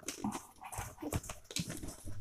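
Plastic wrapping rustling and polystyrene packing and cardboard scraping and creaking as a boxed laser printer is worked loose from its packing, in short scattered sounds.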